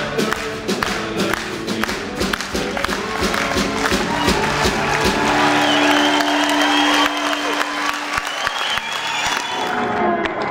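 Live folk band of acoustic guitars, electric guitar and keyboard playing the closing bars of a song, ending on a long held note about halfway through. Audience applause and cheering swell over the final chord and continue after it.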